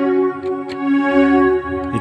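Yamaha PSR-S775 arranger keyboard sounding a steady held chord on its left-hand voice alone, with no bass under it, which the player calls "not good".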